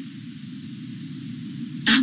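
A pause in a man's speech, filled with steady background noise: a low rumbling hum and a faint hiss. His voice comes back just before the end.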